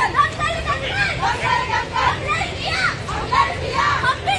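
Many high-pitched voices of a group of women raised together and overlapping, loud and continuous, as at a slogan-chanting street performance.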